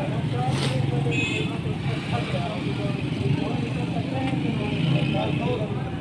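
Busy roadside street: a steady rumble of vehicle engines and traffic with people talking in the background, and a brief high squeal about a second in.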